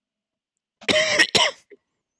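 A man clearing his throat with a short cough in two quick bursts, about a second in.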